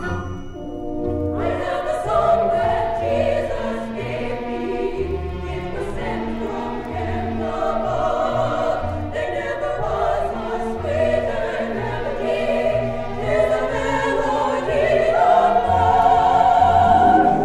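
Choir singing with accompaniment on a live 1967 recording played from a vinyl LP. The voices come in about a second in, over an accompaniment with a pulsing bass note.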